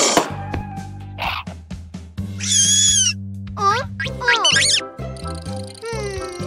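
Children's cartoon background music with a steady stepped bass line, overlaid by short high, squeaky cartoon sound effects. The squeaks have wavering and sliding pitch and come at about two, three and a half and four and a half seconds in.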